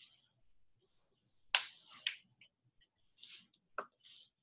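A few faint, sharp clicks over quiet room tone. The loudest comes about a second and a half in, another follows half a second later, and one comes just before the end.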